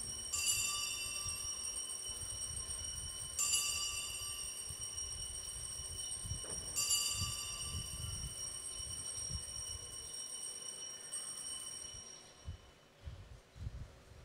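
Altar bells rung three times, about three seconds apart, each ring hanging on before the sound fades away near the end. They mark the elevation of the consecrated host.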